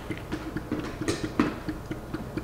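Light taps and clicks of hands handling a plastic humidifier on a countertop, with a sharper click or two a little after a second in.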